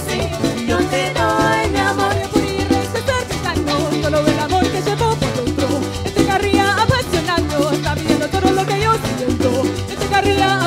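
Live parang music: cuatro and guitar strumming with maracas shaking over a steady bass line, while several voices sing the melody.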